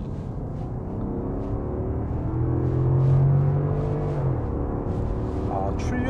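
Genesis EQ900 Limousine's 5.0-litre V8 accelerating hard, heard from inside the cabin: the engine note climbs steadily, grows loudest, and steps down about four seconds in before pulling on.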